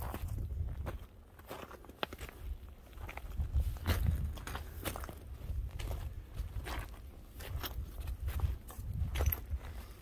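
Footsteps crunching irregularly on loose rocky scree, over a low rumble of wind on the microphone.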